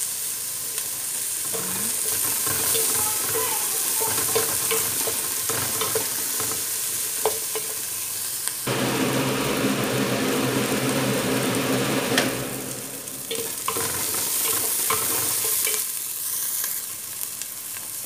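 Diced onion and green bell pepper sizzling in hot oil in an aluminium stockpot, stirred with a wooden spatula that clicks and scrapes against the pot. A low hum joins for a few seconds around the middle.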